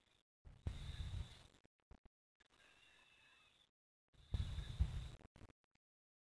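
Two faint breaths into a close microphone, about three and a half seconds apart and each about a second long. Between them, a faint hiss cuts in and out.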